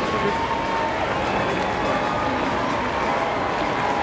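Stadium crowd murmur, steady and unbroken, with a faint echoing public-address voice underneath.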